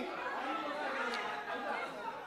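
Low, steady background chatter of several indistinct voices, with no single loud speaker.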